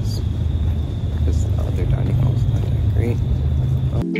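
Outdoor city ambience: a heavy, steady low rumble with a thin high tone over it, and faint voices now and then.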